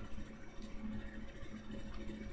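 Faint room noise of a home recording, with a low, steady hum.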